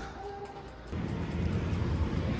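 Soft background music with a few sustained notes. About a second in, a low outdoor rumble of city street traffic comes in under it and stays.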